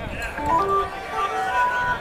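A live band's amplified instrument playing a few single held notes one after another, the pitch stepping up and down.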